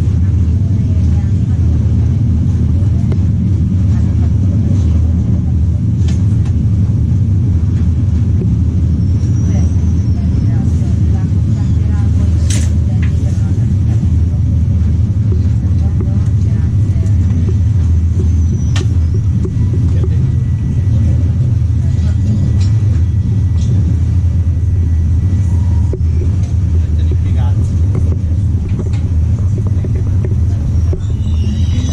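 Interior of a UIC-Z Intercity passenger coach in motion: a steady, loud low rumble of the wheels running on the rails, with a few light clicks and knocks along the way.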